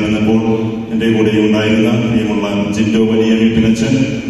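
A man's voice chanting in long, steady held notes, amplified through a microphone.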